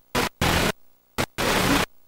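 Static hiss from a blank stretch of videotape being played back. It cuts in and out in about four irregular bursts with near-silent gaps between them.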